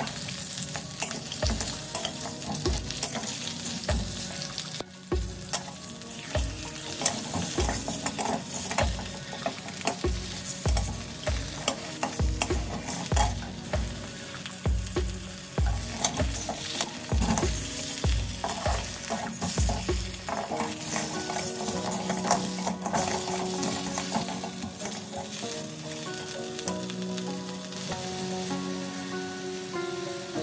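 Pork knuckle pieces sizzling in caramelised rock sugar in a hot wok while a metal spatula turns and scrapes them, coating them in the caramel. A run of low thuds, about one a second, goes on until about two-thirds of the way through as the pieces are turned.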